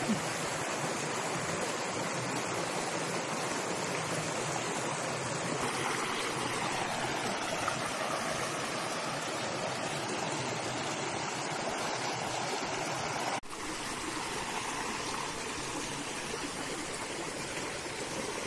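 Shallow rocky stream running over and between boulders, a steady rush of water. It drops a little quieter about two-thirds of the way through.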